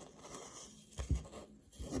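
A metal spoon stirring a dry mix of minced onion flakes, parsley flakes and salt in a glass mason jar: a soft, dry scratching rustle, with a dull bump about a second in.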